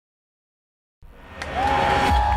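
Silence for about a second, then the channel's logo ident sound fades in: a rising swell of noise with a single held high tone sliding in near the end.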